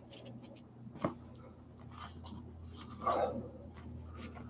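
Trading cards in a small stack being shuffled and slid against each other by hand: soft scraping with a sharp click about a second in and a louder rustle about three seconds in.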